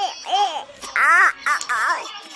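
A child laughing in short pitched bursts, rising to a loud, high squeal about a second in.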